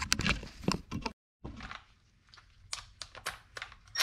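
Scattered light clicks and knocks of metal brake parts and tools being handled at a car's rear wheel, broken by a sudden cut to total silence a little over a second in.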